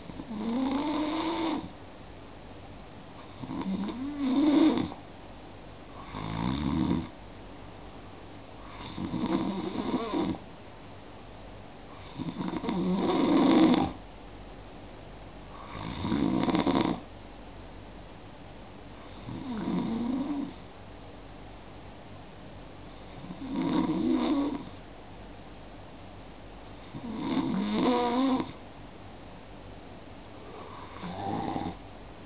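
Snoring in a slow, regular rhythm: nine snores, one every three to four seconds. Each lasts a second or two and has a rough, rattling tone that bends up and down in pitch, with quiet gaps between.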